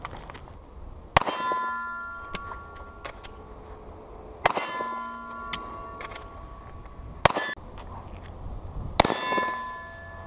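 Gunshots striking a C-zone steel target, four hits a few seconds apart, each followed by the steel plate ringing and fading over about a second.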